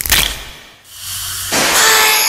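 The metal screw cap of a small glass bottle of carbonated digestive drink cracks open with a sharp snap and a short hiss of escaping gas. About a second later a louder fizzing of bubbles builds up and carries on.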